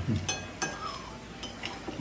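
Spoons clinking against ceramic plates as people eat, several short light clinks spread through the moment.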